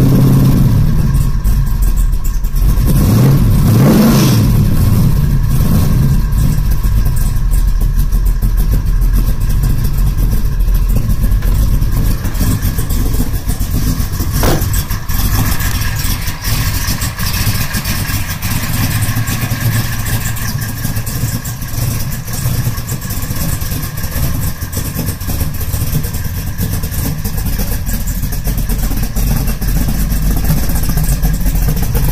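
A 572 cubic-inch big-block Chevrolet V8 in a 1967 Camaro running just after a cold start, revved up and back down about three seconds in, then settling into a steady idle.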